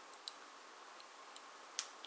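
Fingers handling a small metal house-shaped locket pendant: a few faint ticks, then one sharp click near the end as the locket is worked open.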